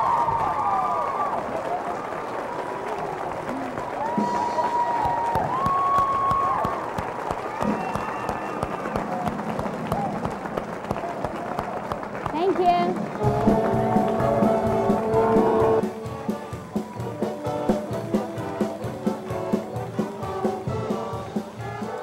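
Audience applause with cheering and whoops. About thirteen seconds in, music starts up over it and carries on.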